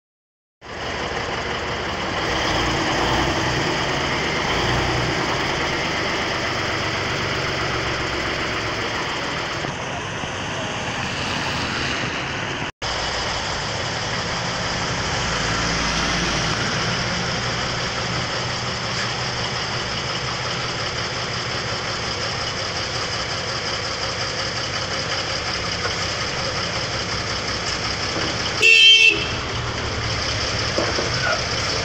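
A heavy truck's engine running steadily, with a short, loud vehicle horn toot near the end.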